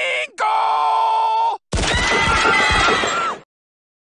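A cartoon man's voice yelling in three long held cries, each on one steady pitch, the second higher than the first; the last is rougher and sits over a rumbling noise. It cuts off about three and a half seconds in.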